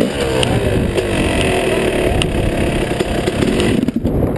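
2005 Yamaha YZ250's two-stroke single-cylinder engine running under way, its note falling over the first half second and then holding fairly steady at moderate revs.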